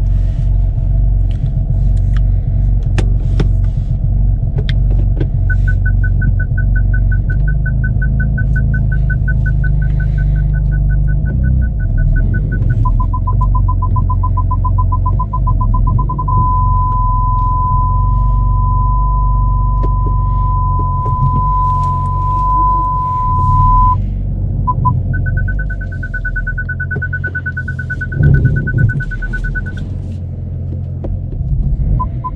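BMW M4 parking distance control warning: a fast run of beeps at one pitch, then lower beeps that merge into a continuous tone for several seconds, then a continuous higher tone near the end. A steady continuous tone is the sign that an obstacle is very close. Underneath is the low rumble of the engine at low speed.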